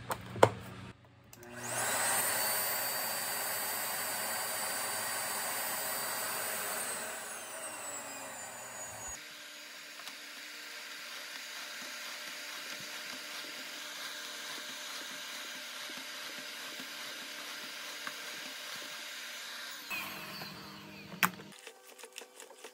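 Zelmer Solaris ZVC502HQ vacuum cleaner motor running with its top cover off, test-run after its shorted mains cable was replaced. It spins up with a high whine about two seconds in, drops to a lower, quieter speed around eight seconds in, and winds down and stops near the end.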